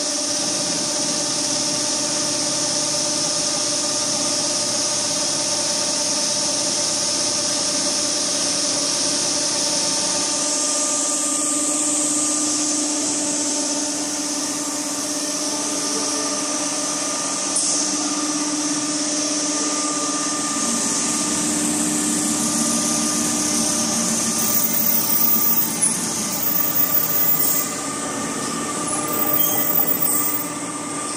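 Richpeace automatic pillowcase template sewing machine running: a steady mechanical hum with several held tones and a high hiss, its loudness wavering a little near the end.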